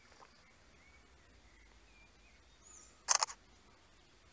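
Quiet riverside background with a few faint bird chirps, broken about three seconds in by a short sharp rasping burst of two or three quick strokes, the loudest sound here.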